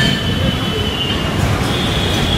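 Loud, steady rushing noise of outdoor ambience, with a faint thin high tone in the background.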